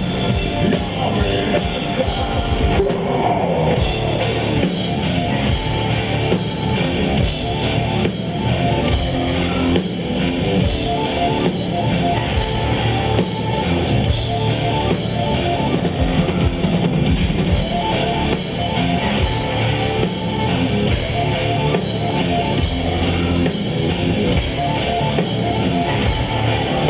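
Heavy metal band playing live: a drum kit and electric guitars, loud and continuous.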